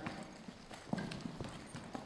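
Hoofbeats of a Quarter Horse moving at the walk on soft sand arena footing: faint, dull hoof falls about every half second.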